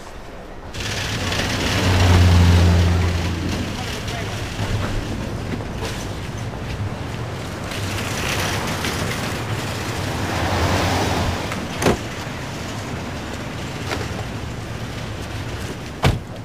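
Parking-lot traffic ambience: a steady wash of road and vehicle noise, with a car engine humming loudest about two to three seconds in. A single sharp click comes near the end.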